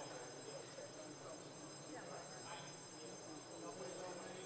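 Faint murmur of scattered distant voices and movement in a large chamber, with a steady faint high-pitched whine.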